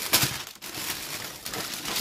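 Brown paper bag crinkling and rustling as it is handled, with a louder crackle just after the start.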